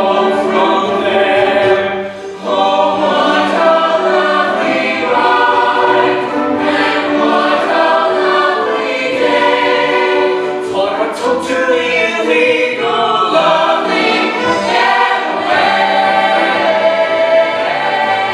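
Stage-musical cast singing together as an ensemble, with a brief drop in loudness about two seconds in.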